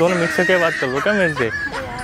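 Raised voices of a man and a woman arguing, the pitch rising and falling quickly.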